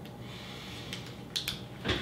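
A few small sharp clicks and soft mouth noises from people eating peanut butter cups, with a louder thump near the end.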